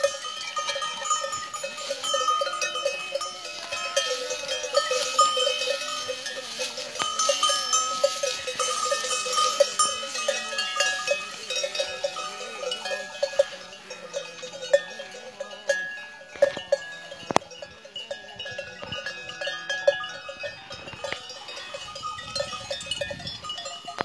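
Bells on a grazing cattle herd clanking and ringing unevenly as the animals move, several bells at different pitches sounding at once.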